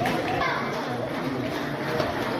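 Steady background chatter of many voices, children's among them, echoing in a large hall.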